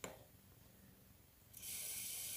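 A short click, then about one and a half seconds in a water tap starts running with a steady hiss.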